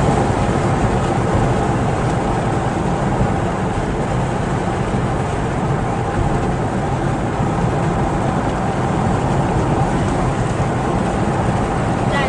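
Steady road noise of a car driving at highway speed, heard from inside the cabin: the engine and tyres on asphalt.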